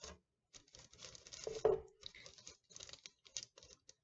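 Wax paper rustling and a stiff flat sheet scraping and tapping against the countertop as it is pressed over gelatin in a mold, in short, irregular bursts.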